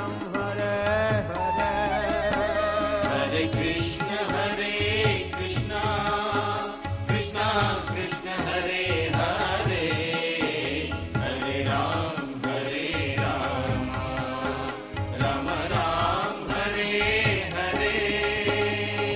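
Devotional chanting music: voices singing a mantra over a steady percussion beat.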